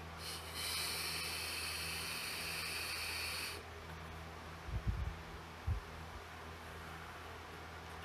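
A drag on a SMOK TFV12 Prince sub-ohm vape tank fitted with an X6 coil: a steady hiss of the coil firing and air drawn through the tank for about three seconds, which stops suddenly. A couple of soft, low puffs of breath follow a second or two later.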